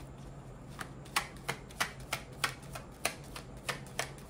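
A deck of tarot cards being shuffled by hand: a regular run of light clicks, about three a second, starting about a second in.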